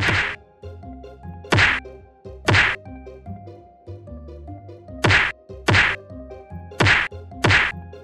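Sharp slaps of hands smacking down on playing cards on a table, seven in all and mostly in pairs, over soft background music.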